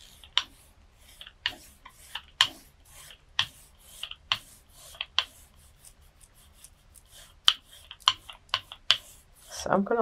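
A rubber brayer rolling black acrylic paint across a gel printing plate: the tacky paint gives irregular sharp sticky crackles and clicks, one or two a second, over a faint rubbing hiss.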